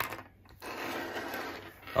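A light click as a small LEGO piece is set down on a hard tabletop, then about a second of dry rubbing and scraping as a hand and plastic parts slide over the table.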